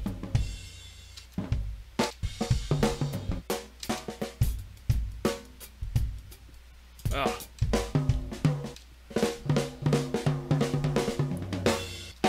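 Recorded funk drum-kit fills auditioned one after another: short sampled fills of quick drum strikes, with a brief lull a little past the middle as one sample ends and the next begins.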